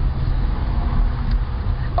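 Car driving, heard from inside the cabin: a steady, loud low rumble of engine and road noise.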